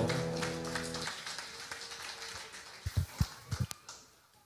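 The backing band's final held chord, which cuts off about a second in, then scattered audience applause fading away, with a few low thumps near the end.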